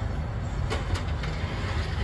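Kintetsu express train running along the line, heard from inside the front of the car: a steady low rumble with a few sharp clicks about a second in.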